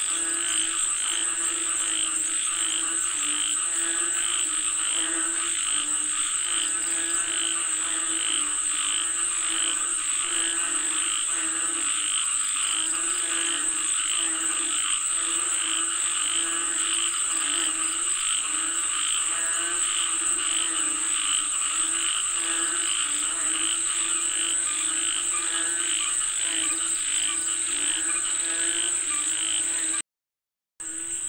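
A dense chorus of frogs croaking, many overlapping pulsed calls repeating without a break. A steady high-pitched whine runs underneath throughout.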